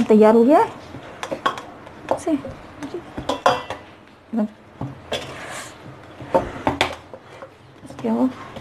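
Hands turning and pressing a ball of dough in a stainless steel bowl, with irregular knocks and clinks against the metal and a brief scraping rustle midway. A voice is heard for a moment at the very start.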